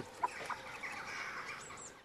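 Hens clucking: a couple of short clucks near the start, then a softer run of calls, with two brief high chirps near the end.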